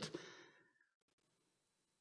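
Near silence: room tone, with a faint sound fading out in the first half second.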